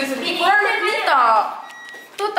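A woman talking.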